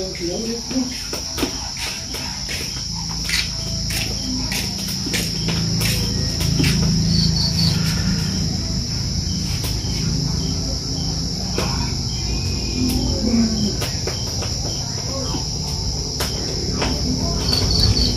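Knife cutting raw meat on a thick wooden chopping block, with scattered sharp knocks of the blade on the wood, over a steady high chirring of insects.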